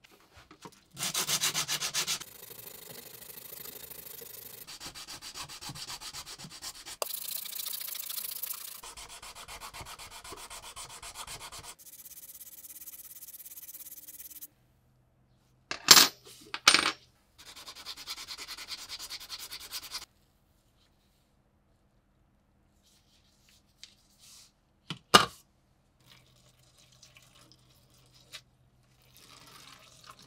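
Hand sanding of rusty metal scale parts with a sandpaper sanding block: a steady scratchy rubbing in several stretches over most of the first half. Then come a few sharp clicks, another short stretch of sanding, and a single sharp click later on.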